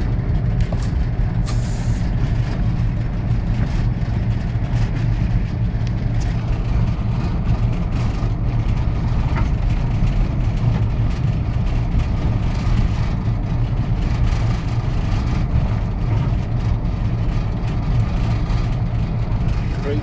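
Diesel locomotive engine running steadily under way, a deep, even drone, with a brief hiss about a second and a half in.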